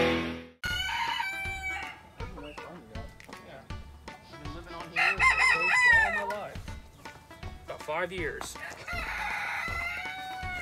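Chickens calling several times, with a longer, crowing-like call about five seconds in.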